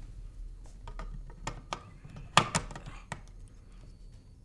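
Plastic clicks and knocks of a camera battery being handled and pushed into a wall-plugged battery charger: a run of short clicks, the loudest a little past halfway.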